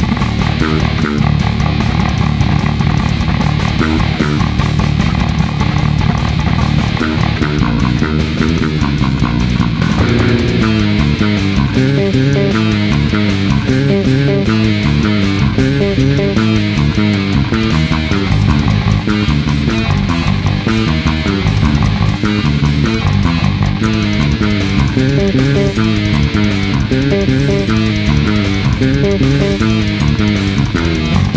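Six-string fretless bass with round-wound strings played fingerstyle in a heavy metal arrangement, with other instruments in the mix. The music changes section about ten seconds in, where a clearer melodic line comes forward.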